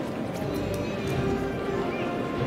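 Processional band music for a Holy Week procession, held notes sounding steadily, with light clicking and clatter over it.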